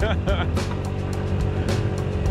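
A 50 cc scooter engine running steadily under load on a slow uphill climb, with wind buffeting the microphone. A short laugh comes in the first half second.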